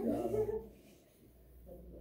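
Students laughing briefly, dying away within about half a second.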